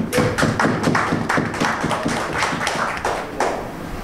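Audience clapping in a pause of a speech, a run of sharp claps coming about six or seven a second.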